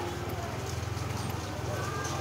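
Motorcycle engine running steadily at low speed close by, a low rapid pulse.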